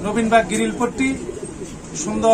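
Domestic pigeons cooing beneath a man's talking voice.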